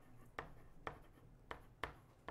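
A stylus writing by hand on a tablet screen: four light, sharp taps about half a second apart as the pen strokes out a word.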